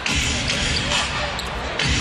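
Basketball arena crowd noise with a basketball being dribbled on the hardwood court.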